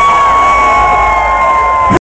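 A loud, steady high-pitched tone held without a break and sinking very slightly in pitch, over a cheering, whooping concert crowd; the sound cuts off abruptly near the end.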